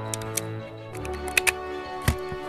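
Background music holding a steady chord, with a few sharp clicks of plastic LEGO pieces as the windscreen canopy is pressed onto the brick-built car; the two loudest clicks come close together about one and a half seconds in.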